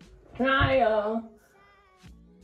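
A woman's drawn-out, wavering vocal cry, just under a second long, with quiet background music underneath.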